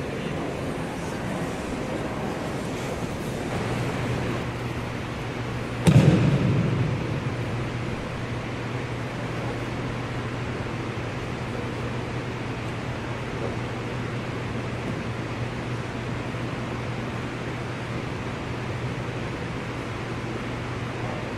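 Steady rushing noise of a large gym hall's ventilation, with a low hum joining in a few seconds in. About six seconds in, a single dull thud, the loudest sound, as a body lands on the padded mat.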